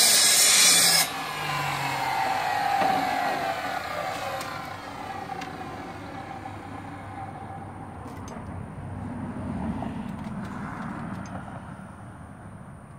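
Chop saw with a metal-cutting blade: the loud cut through an iron baluster stops suddenly about a second in, then the motor and blade spin down with a slowly falling whine over several seconds. A few faint clicks of metal bars being handled follow.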